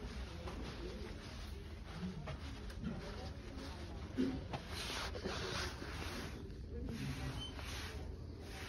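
Steady low room hum with faint, indistinct voices and a few soft rustles, the clearest about halfway through.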